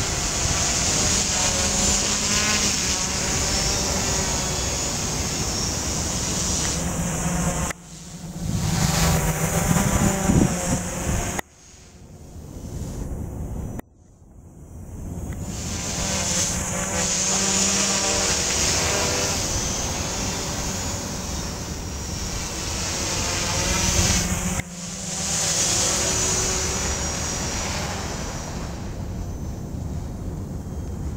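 Quadcopter's brushless outrunner motors (T-Motor MT4006) and propellers running in flight, a steady buzz that wavers in pitch as the throttle is adjusted to hold a hover. Wind noise on the microphone runs underneath, and the sound breaks off sharply several times where the shots change.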